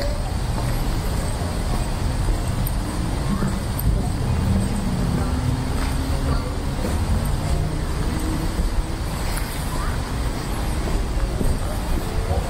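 Outdoor ambience: a steady low rumble with faint, indistinct distant voices.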